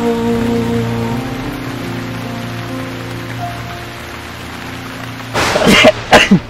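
A sung love ballad ending: its final note and chord are held and fade out over a steady sound of rain. About five seconds in comes a sudden loud, noisy burst.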